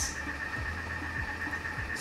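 Thermomix running in slow spoon mode while heating at 120 °C: a steady low hum with a soft low pulse about every 0.6 seconds, over a faint steady high whine.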